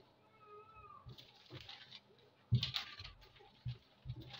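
A faint animal cry, a short rising-and-falling call, about half a second in. About two and a half seconds in comes louder rustling and handling of paper pattern pieces.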